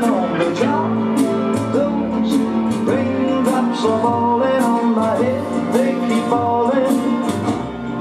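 Live rock band playing: electric guitars, bass guitar and drum kit, with the cymbals struck at a steady beat and a melody line that slides between notes.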